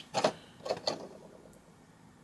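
A few short, light clicks and knocks of handling in the first second, then faint room tone.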